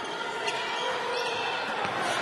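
Game sound from a basketball gym: a steady hum of crowd and court noise, with a single knock about half a second in.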